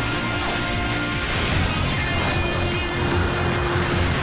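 Dramatic cartoon soundtrack music with a pulsing bass, layered with dense mechanical sound effects for a robot transformation (robo-fusion) sequence. A steady held tone comes in about a second and a half in.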